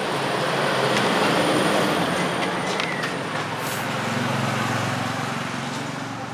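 A road vehicle passing by: a broad rushing noise that swells over the first second or two and then slowly fades.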